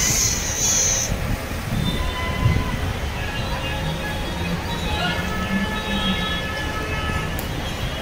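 Busy city street noise: a steady low rumble of traffic with people's voices in the background, and a brief hiss in the first second.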